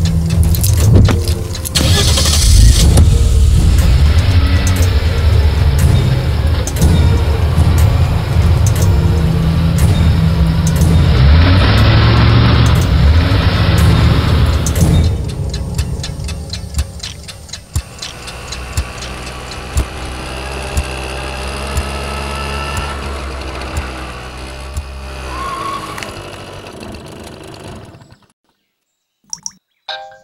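A car engine starting and running under a film's dramatic background score. It is loud for the first fifteen seconds, then quieter, and cuts off a couple of seconds before the end.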